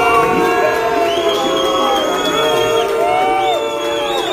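A crowd cheering and shouting over loud music, without a break.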